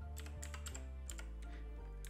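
Computer keyboard typing: a quick scatter of key clicks, mostly in the first half, over soft background music.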